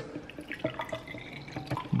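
Vinegar pouring from a plastic gallon jug into a small plastic container, a liquid stream splashing in with small irregular drips.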